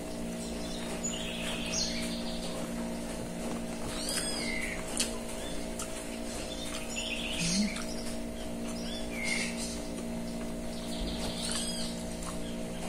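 Short, high, arching animal calls every second or two over a steady low hum.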